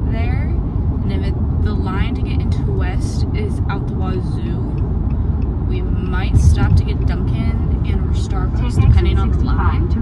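Steady low road rumble inside a moving car, with a person's voice talking over it.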